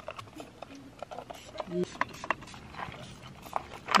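Several short sprays from a pump-spray bottle of OFF! insect repellent onto bare skin: quick hisses and the click of the pump, spaced irregularly.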